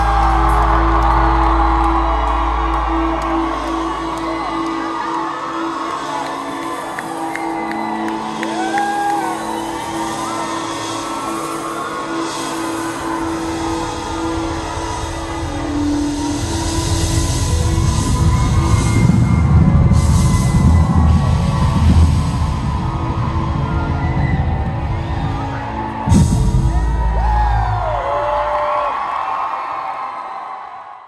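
A live rock band's closing bars: held keyboard notes over a low rumble that swells, while the audience cheers and whoops. A sudden loud hit comes near the end.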